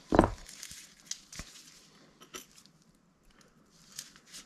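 Faint scratching and rustling of a pipe cleaner being worked through a small saxophone key, with a few light clicks from the metal key being handled. A short low thump comes just after the start.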